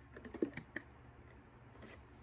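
Plastic body mist bottles clicking and knocking lightly against each other as one is set down among the others in a storage bin and another is picked out. There is a quick run of light clicks in the first second and one more click near the end.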